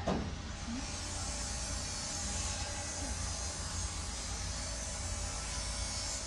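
Steady low background rumble with a hiss, and a brief sound that slides quickly down in pitch right at the start.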